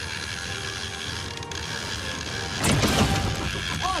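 Big-game fishing reel being cranked hard against a hooked bluefin tuna, its gears clicking and ratcheting steadily. About two and a half seconds in, a brief louder rushing burst cuts across it.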